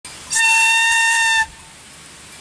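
Whistle made from a hollow Himalayan balsam stalk, blown once: a single loud, steady note lasting about a second, which breaks off abruptly.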